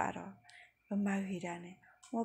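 Only speech: a woman talking, with a short pause in the first second.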